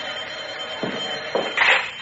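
Radio-drama sound effect of an office telephone ringing, then the handset being picked up with a couple of knocks near the end.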